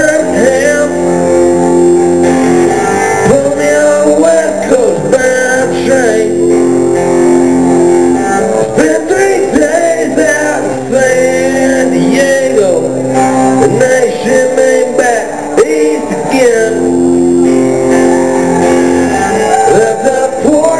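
A rock band playing live and loud: electric guitar chords over drums.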